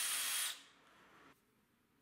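DeWalt 20V cordless hammer drill with a 3/16-inch bit boring through a metal cabinet mounting bar: a steady high whine that stops about half a second in, then near silence.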